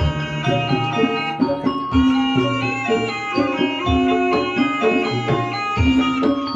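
Javanese gamelan music accompanying an ebeg hobby-horse dance: pitched metal percussion playing ringing melodic lines over hand drum, with a deep stroke about every two seconds.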